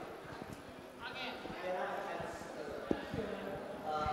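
Faint, distant voices talking off-microphone in a large hall, with scattered low knocks and a sharp click about three seconds in.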